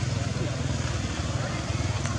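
An engine running steadily: a low, evenly pulsing rumble with hiss over it.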